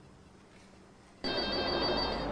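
After about a second of near silence, a telephone starts ringing over the background noise of a busy room.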